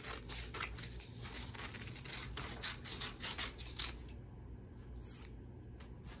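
Scissors snipping through a sheet of paper, a quick run of cuts that stops about four seconds in.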